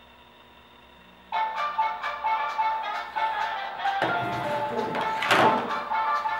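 A mobile phone's ringtone, a melodic tune that starts abruptly after about a second of near silence and keeps playing.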